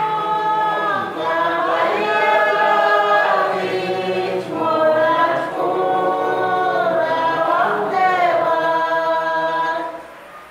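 A congregation singing a hymn together without accompaniment, in long held notes, with short breaks between phrases.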